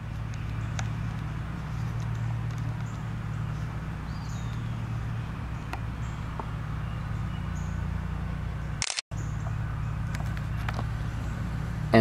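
A steady low background hum with a few faint ticks and one faint falling chirp about four seconds in; the sound cuts out completely for a moment just before nine seconds.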